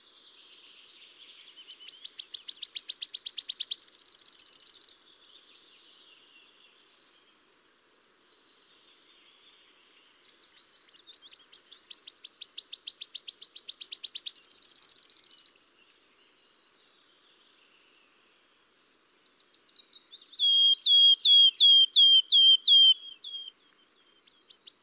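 Wood warbler song from a recording: two high trills of about three to five seconds each, speeding up and growing louder to the end. Then a run of about nine soft, repeated whistles, each falling in pitch.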